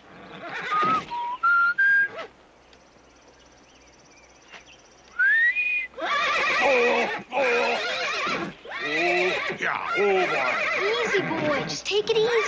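A few short whistled notes stepping upward in pitch, then after a lull a rising whistle and a horse whinnying over and over through the second half.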